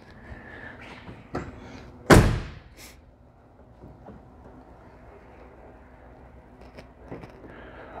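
A car door shut with one solid thunk about two seconds in, with a lighter knock just before it and a few faint clicks and handling sounds afterwards.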